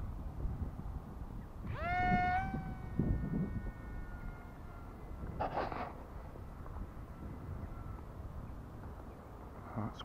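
Tiny electric motor and propeller of a foam supercapacitor glider whining up about two seconds in, pitch rising sharply then holding, and fading over the next couple of seconds as it flies away. Wind rumble on the microphone underneath, with a short noisy burst a little past the middle.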